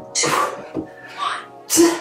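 A man's heavy, forceful breaths and grunts of effort, three short bursts, as he strains through the last seconds of a bodyweight back exercise, with faint background music.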